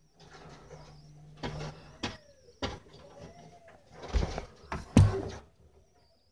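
Construction work on scaffolding just outside: a string of irregular knocks and bangs, the two loudest a little after four seconds and at about five seconds, over a low steady hum during the first second and a half.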